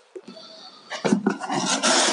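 Cardboard shipping box being handled, its flaps folded back with rustling and scraping starting about a second in.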